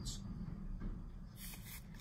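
Brief rustling from a 7-inch vinyl single and its sleeve being handled and lowered: a short rustle at the start and another about a second and a half in.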